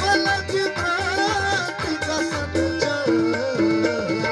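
Live folk-song accompaniment: tabla drumming under a melody on harmonium and electronic keyboard, with steady held and stepping notes.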